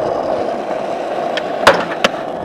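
Skateboard wheels rolling steadily over rough asphalt, with one sharp clack of the board near the end.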